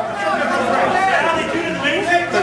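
Several voices talking over one another, with chatter in a large hall.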